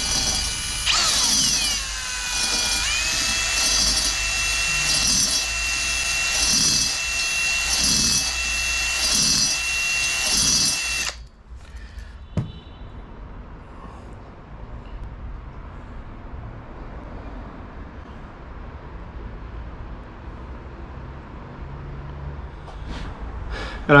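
Cordless drill spinning a brake-cylinder hone inside the oiled bore of a small two-stroke scooter cylinder. The motor whine drops in pitch and settles in the first couple of seconds, with a low pulse at an even beat of a little over once a second. It stops suddenly about 11 seconds in, leaving a faint hiss and a single click.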